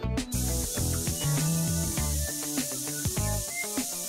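Steady hiss of a spray lance spraying liquid, starting just after the start, over background music with a beat.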